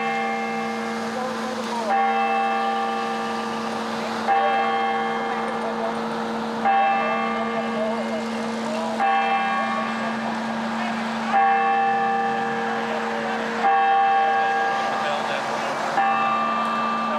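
A large bell tolling slowly, struck six times about every two and a half seconds, each strike ringing on and fading over a steady lingering hum.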